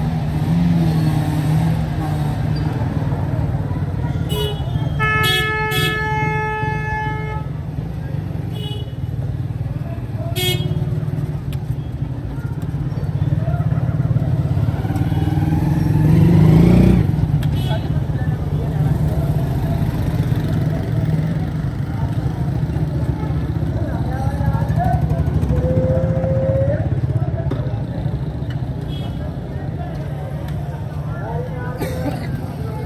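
Busy market-street traffic: a steady rumble of engines and people's voices, with vehicle horns honking. There are short toots and one long horn blast about five seconds in. A motorcycle rickshaw passes close, loudest around sixteen seconds in.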